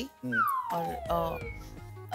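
A comic sound effect: one long tone sliding steadily downward in pitch for about a second, over soft background music.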